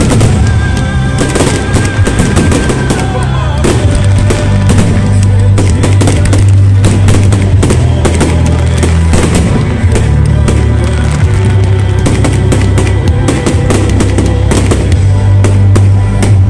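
Fireworks going off in quick succession, with dense crackling and bangs, over loud music with a heavy, steady bass.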